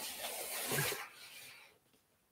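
Cardboard LEGO set box rubbing and sliding against the desk as it is handled and set upright, a soft scraping that stops shortly before the end.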